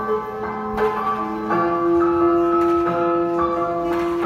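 Piano accompaniment playing sustained chords under a slow melody, the notes changing about once a second, in an instrumental passage of the song.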